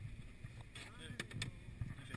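Faint low rumble of outdoor background noise, with a few soft clicks and a faint trace of voices.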